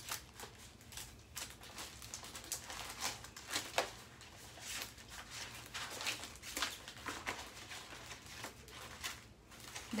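Scattered rustling and light clicks of someone rummaging through a pile of sheets and craft supplies, searching for a 5×7 letter stencil.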